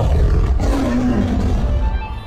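A big-cat roar sound effect that starts suddenly and falls in pitch, laid over intro music.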